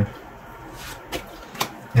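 Tarot cards being drawn from a fanned spread on a table: a few light taps and slides of card, about a second in.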